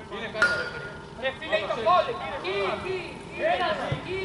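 Players' voices calling and shouting across the pitch, with a short sharp tone about half a second in.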